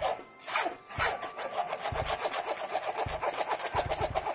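Metal spoon scraping and stirring a thick blended corn mixture around a plastic sieve, pushing it through the mesh, in a rapid, even rasping rhythm. A few low bumps come through near the end.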